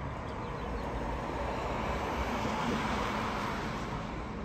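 Jet engines of a Southwest Airlines Boeing 737 on final approach, a steady rushing whine that swells as the airliner draws nearer, loudest about three seconds in.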